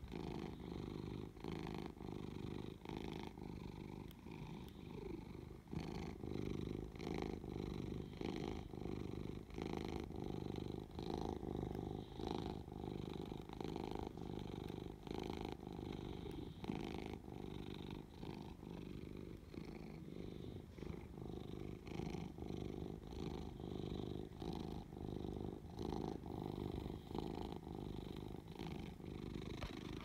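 An elderly cat, 17 years old, purring steadily right against the microphone, the purr swelling and easing in a regular rhythm with each breath.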